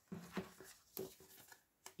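Faint handling of cardstock greeting cards on a wooden table: soft paper rustle as a card is picked up and flipped, with three short taps.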